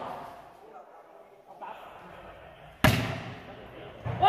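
A volleyball struck hard by hand on a serve: one sharp smack about three seconds in, trailing off briefly in the hall, over faint background voices.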